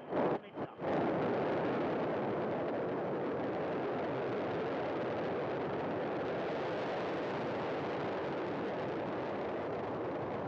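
Soyuz rocket engines, its four strap-on boosters and single core engine, firing at liftoff as the rocket climbs from the pad: a steady, dense roar of noise. The sound drops out briefly twice in the first second.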